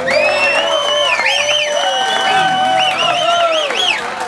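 Live audience cheering and whooping at the end of a song, with long high-pitched cries over the crowd.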